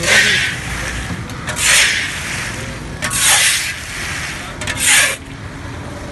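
Peanuts and hot sand being stirred and scraped in a large steel wok: four raspy scraping strokes about a second and a half apart.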